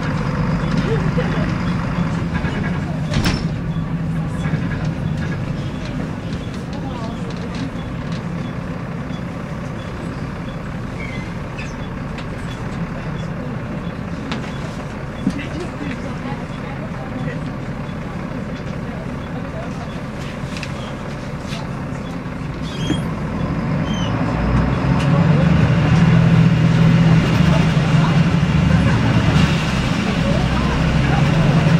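Volvo D7C six-cylinder diesel engine of a Volvo B7L bus, heard from inside the passenger saloon: a steady low drone that eases off in the middle and grows louder from about 24 seconds in. A sharp knock sounds about 3 seconds in.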